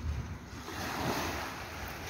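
Surf washing onto a beach, a steady hiss of waves that swells about a second in, over a low rumble of wind on the microphone.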